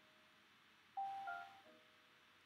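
A bell-like chime of a few clear descending notes, starting about a second in and fading away.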